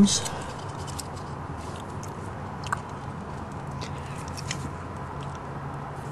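A steady low hum with faint scattered clicks and rustles from hands handling rubber vacuum hoses, and one small sharp click near the middle.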